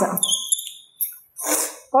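Chalk writing on a blackboard: a short high-pitched squeak, then a couple of brief scratchy strokes, after the tail of a woman's word at the start.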